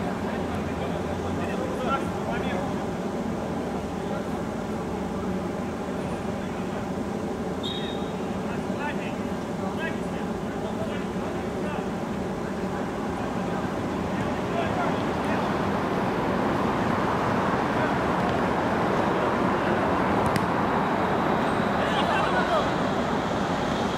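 Outdoor five-a-side football match ambience: distant players' shouts and voices over a steady wash of background noise, getting a little louder after the middle, with a short high tone about eight seconds in.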